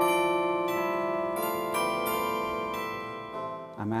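Campus carillon of tuned metal rods, amplified to sound like cast bells and played from a keyboard console: several bell notes struck one after another, ringing over each other and dying away near the end.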